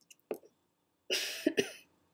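A woman coughing: a short burst near the start, then a louder double cough about a second in.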